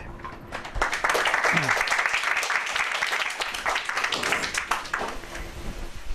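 Audience applauding, starting about a second in.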